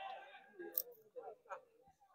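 Mostly quiet. A drawn-out spoken vowel trails off at the very start, followed by a few faint, short voice fragments and light clicks.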